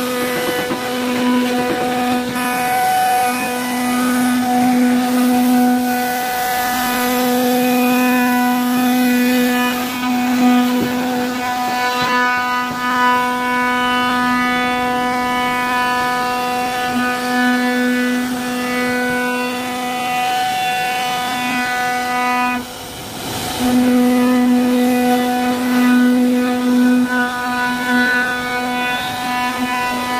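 CNC router spindle routing grooves into a solid wood panel: a steady whine over a strong hum, holding one pitch as the bit cuts. About two-thirds of the way through, the sound dips and breaks for a moment, then picks up again.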